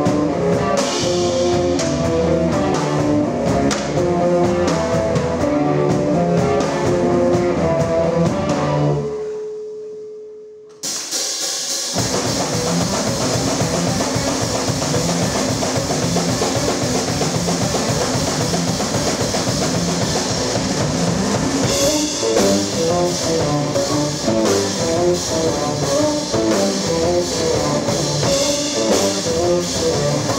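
Live band playing a song with drum kit and guitar. About nine seconds in the band stops except for one held note that fades, then the full band comes crashing back in about two seconds later.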